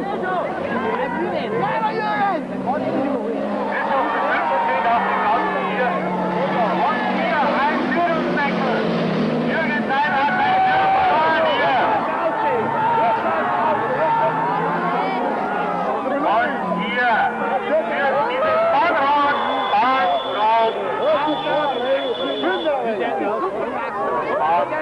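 Stock-car engines running around a dirt track, mixed with the chatter of spectators close by.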